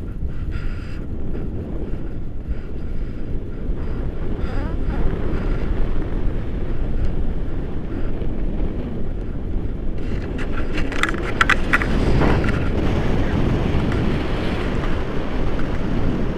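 Wind rushing over the microphone of a camera held out in flight under a tandem paraglider: a steady low rumble, with a brief higher-pitched sound about eleven seconds in.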